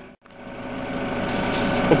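After a brief dropout, a steady mechanical hum with a few even tones fades in and grows louder.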